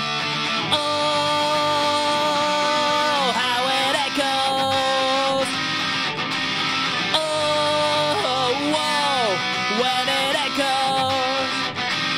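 Electric guitar playing an instrumental break between verses: strummed chords under a melody of long held notes that slide down in pitch at their ends, twice.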